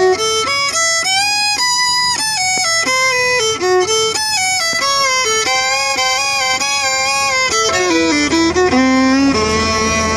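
Solo fiddle bowed, playing a run of single notes with some slides between them, then settling near the end into a long held note with a lower string sounding under it.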